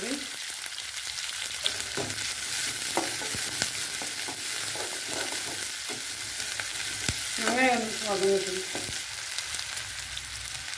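Sliced shallots and dried red chillies frying in an aluminium kadai, a steady sizzle throughout. A steel spatula stirs and scrapes, knocking against the pan now and then.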